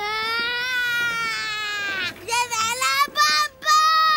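A young boy screaming in a tantrum: one long high shriek held for about two seconds, then a run of shorter, broken yells.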